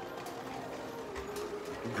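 Faint background music with a few held notes over the steady hum of a large store.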